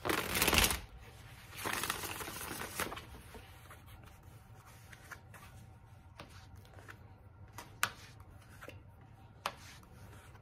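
A deck of tarot cards being shuffled by hand: two loud runs of riffling card noise in the first three seconds, then quieter handling of the deck with a few sharp taps.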